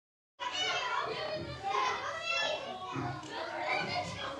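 Many children's voices chattering and calling over one another, as at play, starting just after the beginning, with music faintly underneath.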